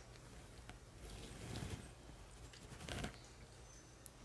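Faint rustle of cotton yarn and a crochet hook being worked while chain stitches are made, with a soft scrape about halfway through and another near the end, over low room hum.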